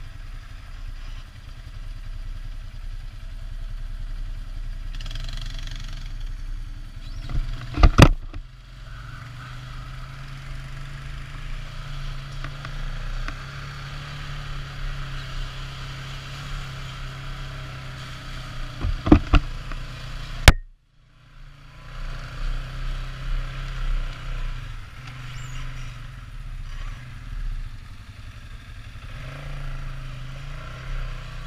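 ATV engine running steadily at trail speed on a rough dirt track. Loud sharp knocks break in twice, about 8 seconds in and again around 19 to 20 seconds, and the sound cuts out briefly just after.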